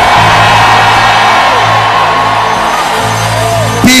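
Background music of long held notes, with a congregation shouting over it.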